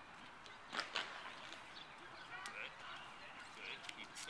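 Faint outdoor voices with scattered high chirps, and two sharp clicks close together about a second in.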